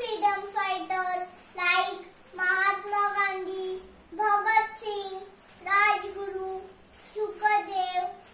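A young girl singing alone, unaccompanied, in about six short phrases of long held notes with brief pauses between them.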